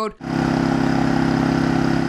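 An engine running steadily, with an even fast pulse, cutting in suddenly a moment in.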